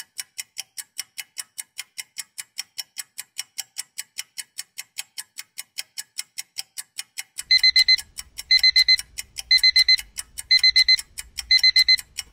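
Countdown timer sound effect: a clock ticking about four times a second, then, about seven and a half seconds in, a digital alarm clock starts beeping in rapid groups about once a second over the ticking, signalling that the time is up.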